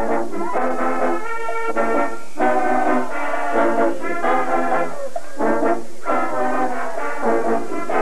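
Marching band brass section, trombones and horns, playing a tune in full chords, loud, in short phrases with brief breaks between them.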